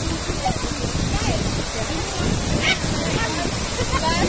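Fountain water jets arching over a walkway and splashing down onto the path and into the water below: a steady rush of falling water, with people talking faintly in the background.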